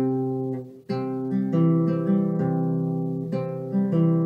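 Nylon-string classical guitar playing a C major chord passage: the chord rings and fades, is struck again about a second in with picked notes changing above the bass, and is struck once more near the end.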